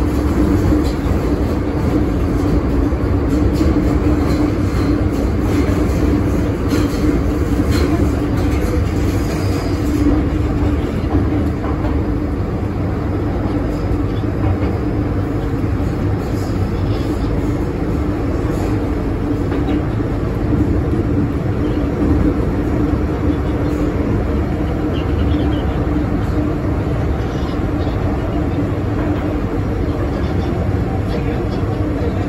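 Inside a passenger car of an MTR M-train running underground: steady rumble of wheels on rail with a steady hum from the train. A few clicks come in the first ten seconds.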